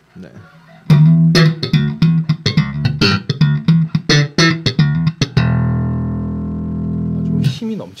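Passive electric bass with Jazz-style pickups, played slap-style through an Ampeg BA-108 combo amp (single 8-inch speaker, 25 watts) with its three-band EQ set flat. A quick run of sharp slapped and popped notes lasts about four seconds, then ends on one held note that rings for about two seconds and fades.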